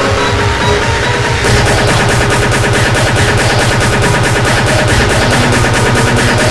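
Speedcore electronic music: a very fast, evenly repeating distorted kick drum at about four to five hits a second. It comes in at full force about a second and a half in, under sustained synth notes.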